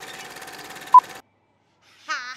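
Old-film countdown leader sound effect: projector-style crackle and hiss over a faint steady tone, with one short, loud beep about a second in. It cuts off suddenly just after the beep.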